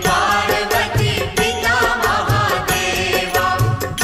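Hindu devotional aarti music with a wavering melody line over a steady percussion beat, with a deep thud about every second and a third.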